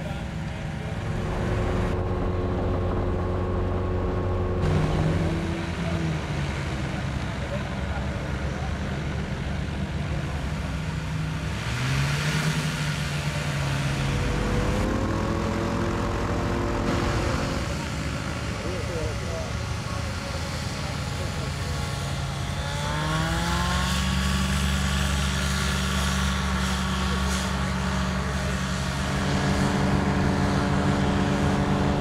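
Aerolite 103 ultralight's engine and propeller running, the pitch rising and falling with throttle changes, then climbing to a steady higher pitch about 23 seconds in.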